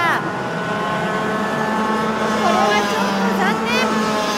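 Several junior racing karts' small two-stroke engines buzzing at high revs. One engine's pitch falls sharply right at the start as it goes by, and there are brief dips and rises in pitch about two and a half seconds in and again near the end.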